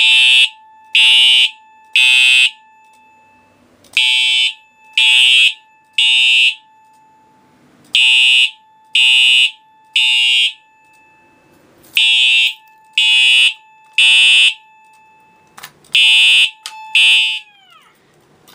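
Simplex TrueAlert horn and TrueAlert chime sounding together in sync on code 3, the temporal-three pattern: loud half-second blasts in groups of three, one a second, with a pause of about two seconds between groups. Four full groups sound, then the alarm cuts off after the second blast of the fifth group, about 17 seconds in.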